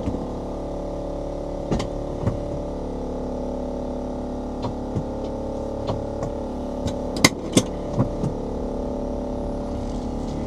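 Steady, unchanging electrical whine from a powered-up electric conversion car, heard from inside its cabin; the pitch does not rise, so the car is not gaining speed. Several short clicks and knocks from the cabin sound over it, the loudest pair a little past the middle.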